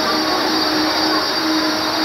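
A child holding one long, steady 'aaah' on a single breath for a breath-holding challenge, over a steady hiss of rain.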